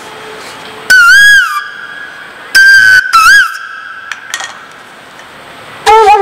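Bansuri (bamboo transverse flute) playing three short high notes, the first about a second in and two more around the middle, each with its pitch bending up and down, separated by pauses filled with a reverb tail. A lower melody starts up again at the very end.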